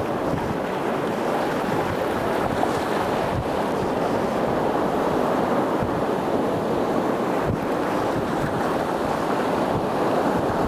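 Sea surf washing in over rocks and seaweed, a steady rushing of broken water and foam, with wind rumbling on the microphone now and then.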